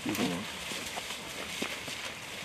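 Hazelnut bush leaves and branches rustling as hazelnuts are picked by hand, with a few sharp clicks of twigs and nut clusters snapping off.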